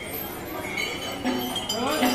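Metal bells and chains on a caparisoned temple elephant clinking as it walks. After a quiet first second there is one clink about a second and a quarter in and another at the end.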